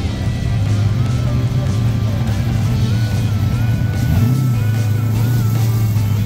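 Background music with the steady low rumble of a black 1970s Chevrolet Nova's engine as the car rolls slowly up and past.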